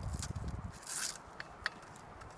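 Hands working the release mechanism on top of a butane extraction tube: rubbing and knocking at first, a short rasp about a second in, then a couple of small clicks.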